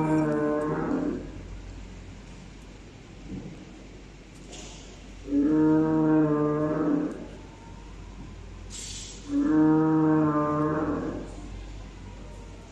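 Loudspeaker sound of an animatronic ankylosaur-type dinosaur: three long, steady-pitched bellowing calls, each lasting about a second and a half, about four to five seconds apart. A brief soft hiss comes shortly before the second and third calls.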